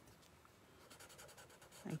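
Faint scratching of a black Sharpie marker on sketchbook paper as it colours in a section of the drawing.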